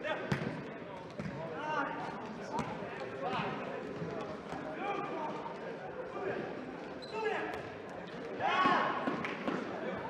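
Indoor futsal being played in a reverberant sports hall: the ball is kicked and bounces on the floor, shoes squeak briefly on the court several times, and players call out.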